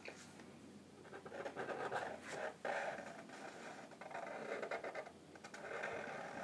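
Felt-tip permanent markers drawing on paper: faint scratchy strokes of the tips across the sheets, in several stretches with short breaks between lines.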